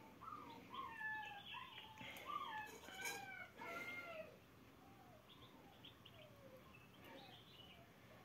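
Faint bird calls: a run of short chirps and whistled glides, busiest in the first half and thinning out after about four seconds.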